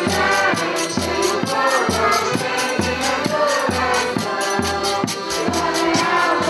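Portuguese folk music: a group singing in chorus over a deep, steady beat about twice a second, with rattling percussion.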